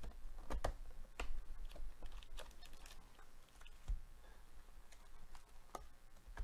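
Gloved hands opening a Panini Prizm Draft Picks hobby box and pulling out its shiny foil card packs: irregular light clicks, taps and crinkles, with a few dull knocks from the cardboard.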